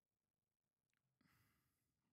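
Near silence, with one very faint exhaled breath a little over a second in.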